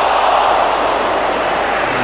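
Football stadium crowd noise, a loud even roar of many voices that swells in the first second and eases slightly after, reacting to an attacking run.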